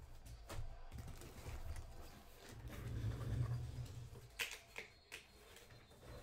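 Handling noise from clear plastic wrapping rustling inside a cardboard box, with a few sharp clicks about four and a half and five seconds in, over a low steady hum.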